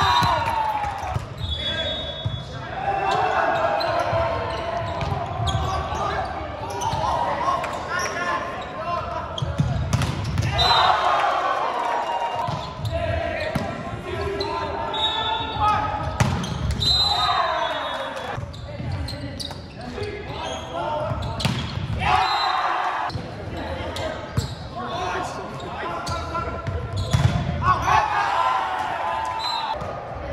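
Volleyball rally in a large gym: the ball is struck again and again and hits the hardwood floor, and players shout calls and cheer in bursts. The hall makes it all echo.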